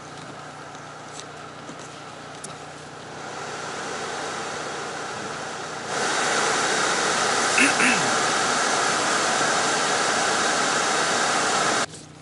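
Hyundai Veloster N's climate-control blower running to defog the steamed-up windscreen: a steady rush of air that grows about three seconds in, jumps much louder about six seconds in, and cuts off just before the end. The engine idles low underneath.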